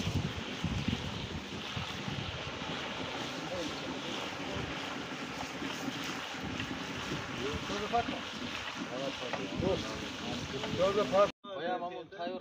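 Meat and bones bubbling and sizzling in oil and broth in a large cast-iron kazan over a wood fire: a steady hiss. Voices come in faintly in the background toward the end, then the sound cuts off suddenly.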